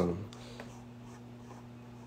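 The end of a man's spoken phrase trails off just after the start. Then there is quiet room tone with a steady low hum.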